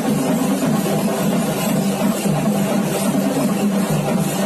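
Loud, continuous festival din: traditional drumming mixed with the noise of a large crowd, with no clear break or lull.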